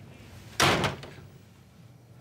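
A door slamming shut once, about half a second in, with a short fading ring after the bang.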